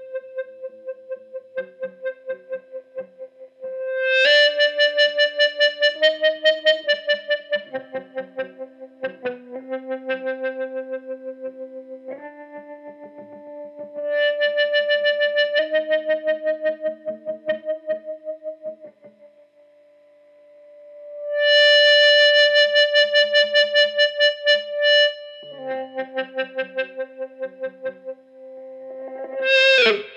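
Electric guitar notes sustained by an EBow, pulsing in volume several times a second as the EBow is moved up and down above the string: a fake tremolo effect. A slow line of long held notes, swelling louder at about four seconds and again at about twenty-one seconds.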